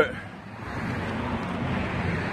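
A car passing on the road: tyre and engine noise that swells from about half a second in and then holds steady.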